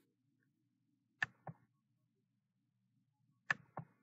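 Computer mouse button clicked two times about two seconds apart. Each time there is a sharp click followed a quarter second later by a softer one.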